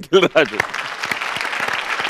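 Applause: many hands clapping, starting about half a second in after a brief spoken word, then going on steadily.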